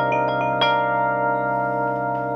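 Electronic stage keyboard playing a bell-like patch: quick repeated notes, about five a second, ending with a last stroke about half a second in, after which the held chord rings on and slowly fades.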